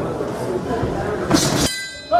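Crowd noise and voices in a sports hall during a kickboxing bout, with one loud sudden sound about one and a half seconds in. The sound then cuts out abruptly for a moment near the end.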